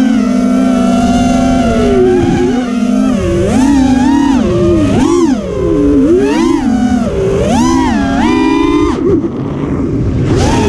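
Brushless motors and propellers of a TBS Oblivion racing quadcopter, heard from its onboard camera: a loud whine of several tones. It holds steady for about three seconds, then swoops up and down in pitch again and again with the throttle, and drops away briefly near the end before picking up.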